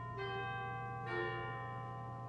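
Slow ambient background music of bell-like chimed notes over a low steady drone; new notes sound twice, about a second apart, each ringing on under the next.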